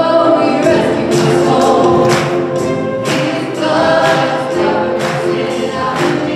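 A live worship band plays a song, with several singers over keyboards and drums keeping a steady beat.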